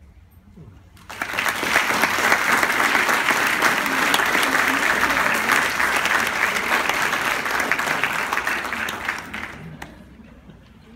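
Audience applauding: the clapping starts suddenly about a second in, holds steady, and fades away near the end.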